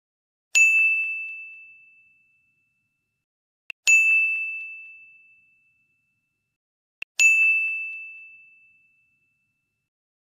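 Three ding sound effects, a little over three seconds apart, each a single clear high bell-like tone that starts sharply and dies away over about a second and a half. A faint click comes just before the second and the third ding.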